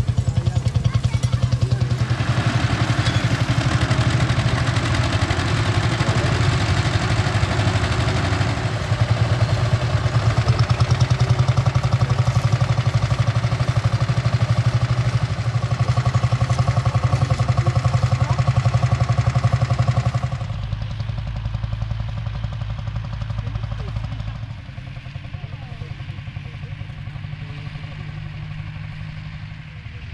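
Vintage tractor engines running steadily under load while pulling ploughs. The engine sound changes abruptly about two-thirds of the way through and again shortly after, and it is quieter toward the end.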